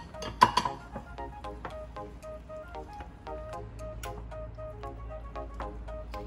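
Upbeat background music, with a sharp clink of a ceramic bowl set down on another bowl about half a second in.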